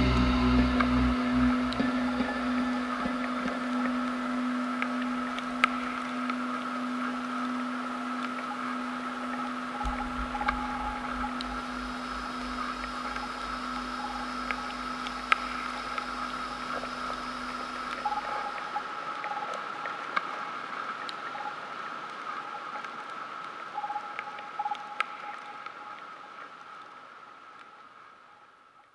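Closing drone of a dark ambient instrumental track: long held low and high tones with scattered faint clicks. The low tone drops out about two thirds of the way in, and the whole sound fades away near the end.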